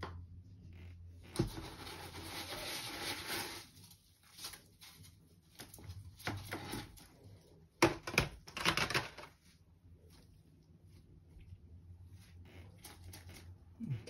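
Small plastic plant pots being handled in a plastic seed tray. A knock about a second and a half in is followed by a couple of seconds of scraping and rustling. The loudest knock comes just before the middle, with more rustling after it and light clicks near the end.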